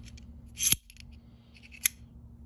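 Reate Exo-M gravity knife's double-edged blade sliding out of its titanium handle: a short metallic slide ending in a sharp snick about two-thirds of a second in, then another single sharp click near the end.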